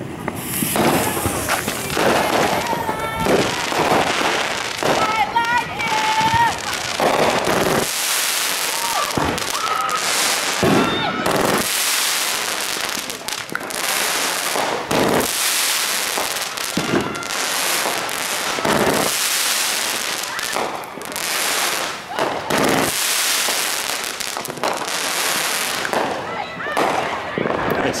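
Aerial fireworks firing and bursting one after another in a long, rapid series, with hiss between the bangs.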